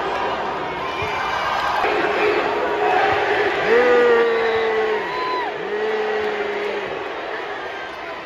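Basketball arena crowd noise, with a voice bellowing two long, held shouts a little past the middle, each about a second long.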